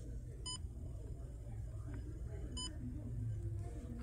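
Two short electronic beeps, about two seconds apart, over a steady low hum of room noise.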